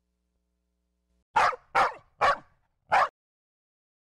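A dog barking four times: three quick barks in a row, then a fourth after a short pause.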